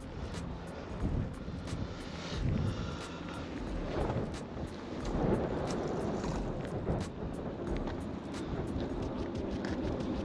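Wind buffeting the microphone: an uneven, steady low rumble and hiss that swells and eases.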